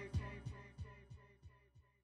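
Hip-hop beat fading out at the end of the track: a low drum thump repeating about three times a second, each hit fainter than the last, with faint lingering tones.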